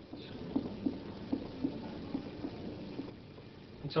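Light finger-on-finger percussion taps on a patient's bare abdomen, struck mostly in quick pairs a little under a second apart. The examiner is working upward from the tympanic bowel area toward the dull lower edge of the liver.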